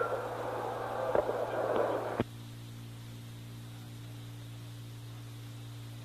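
Open radio channel: hiss with a few sharp clicks, then a click about two seconds in after which only a steady low hum remains.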